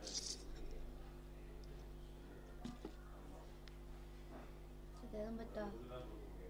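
Handling sounds as a small DC motor and its wires are set down on a table: a brief rustle at the start and a couple of light clicks, over a steady low hum. Faint voice-like sounds come in near the end.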